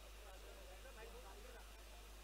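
Near silence, with only faint background sound.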